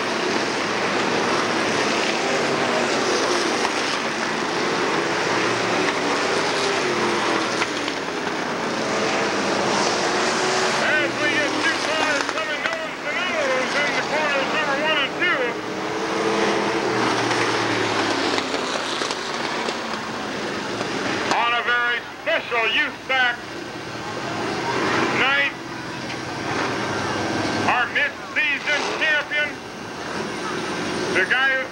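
Dirt late model race cars running at speed past the camera, the engine note rising and falling as the pack goes by. The engine noise eases off about twenty seconds in, and voices come through over it.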